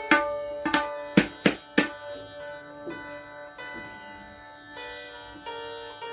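Tabla struck about six times in quick sharp strokes in the first two seconds, then sarangi strings ringing on with held notes that change pitch a few times.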